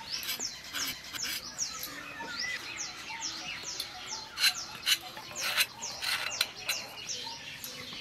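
Small birds chirping over and over in short, high, falling notes, a few each second, with a few sharp clicks from a knife cutting pointed gourds (parwal), the loudest about halfway through.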